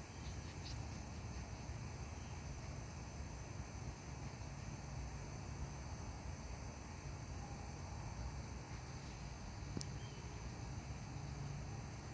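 Quiet outdoor evening ambience: insects chirring steadily at a high pitch over a low background rumble, with one faint click near the end.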